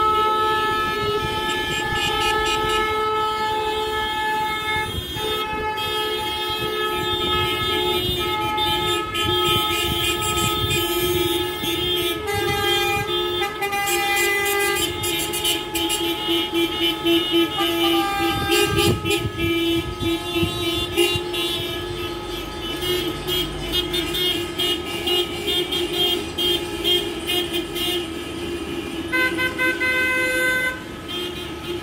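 Many car horns honking at once from a long slow-moving line of cars in a protest motorcade: several sustained blasts at different pitches overlap, with runs of short repeated toots in the second half, under the sound of passing traffic.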